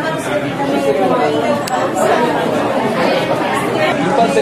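Indistinct chatter of several people talking at once, overlapping voices with no single clear speaker.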